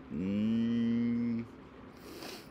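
A man's drawn-out, closed-mouth "hmm" while thinking: one hummed tone that slides up briefly at the start, holds steady for just over a second, then stops.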